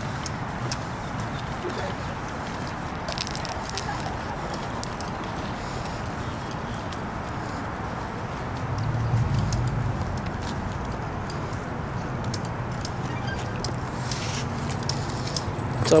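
Outdoor ambience while walking: a steady background hum of distant traffic with scattered light clicks and footfalls, and a low swell a little past the middle.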